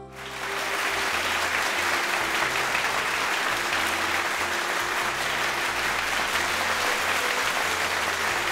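Studio audience applauding, swelling up over the first second and then steady, over background music with a low bass line.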